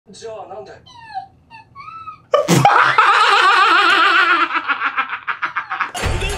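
Soft voice sounds, then about two seconds in a sudden explosive burst of laughter, high-pitched and wavering, that breaks into rapid pulsed laughs trailing off.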